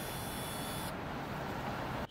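Steady road and engine noise of a moving vehicle on a city street, with a thin high hiss that stops about a second in.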